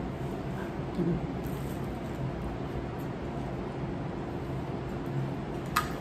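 A person chewing a soft corn-masa gordita with the mouth closed, faint wet mouth sounds over a steady low electrical hum in a small kitchen.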